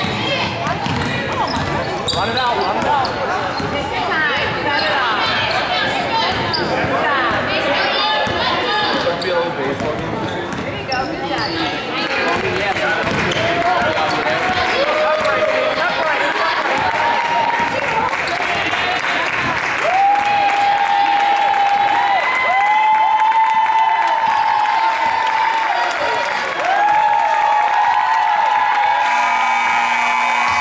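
A basketball being dribbled on a hardwood gym floor amid voices and shouts from players and spectators. In the second half come several long, held shouts.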